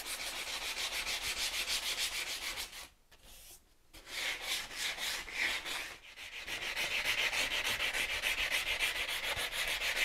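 Diamond hand pad rubbed quickly back and forth along the edge of a cured concrete worktop, an even, rhythmic scraping as the sharp edge is rounded off. The rubbing stops briefly about three seconds in and falters again around six seconds before carrying on.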